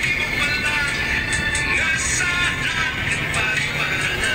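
Music with a high, wavering melody, over the steady low rumble of a moving vehicle.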